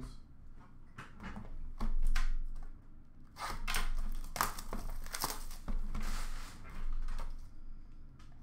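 Hands handling cardboard trading-card boxes and wrappers in a plastic bin: a dull thump about two seconds in, then a run of irregular rustles, scrapes and light knocks.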